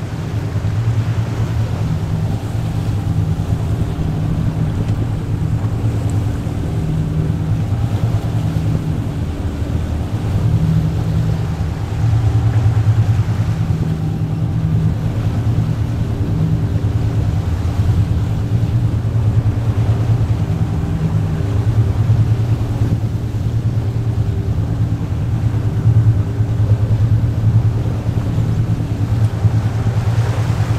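Boat engine of a rigid inflatable boat running steadily, a low hum that swells slightly now and then.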